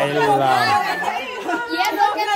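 A group of people talking over one another in lively chatter, several voices at once.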